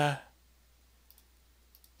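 A few faint computer mouse clicks in the second half, following a spoken "uh".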